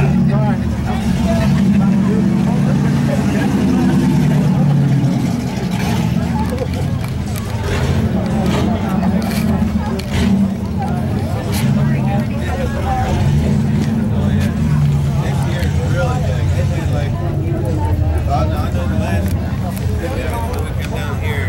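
Supercharged Mopar V8 idling with a steady low rumble, weaker after about five seconds, over the chatter of a crowd.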